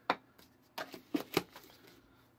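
A few sharp plastic clicks and knocks as a plastic lid is pressed onto a small toy shaker cup and the cup is set down on a hard table: one near the start, three close together in the second half.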